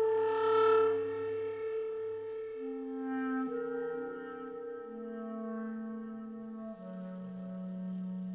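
Clarinet playing slow, sustained notes: one note is held throughout, swelling about half a second in, while a lower line steps down in pitch note by note.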